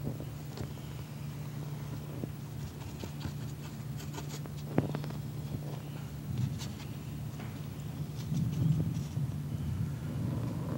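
Faint scattered ticks and scratches of a watercolour brush working on paper, over a steady low hum of the room and microphone.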